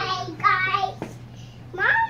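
A young child's voice in two short sing-song calls, one about half a second in and one near the end, with a single small knock just after a second in.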